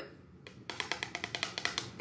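A rapid, even run of light clicks or taps, about ten a second, starting about half a second in.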